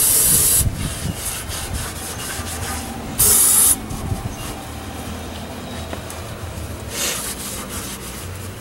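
Aerosol carb and choke cleaner sprayed through a thin straw in short hissing bursts into carbon-caked engine intake ports: one burst ending under a second in, another about three seconds in, and a weaker one near the end. Between the bursts a rag scrubs rapidly over the wet, gunked metal.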